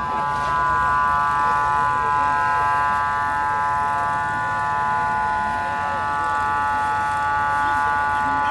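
A machine whining steadily at a high pitch, several tones held together without change, over the murmur of a crowd.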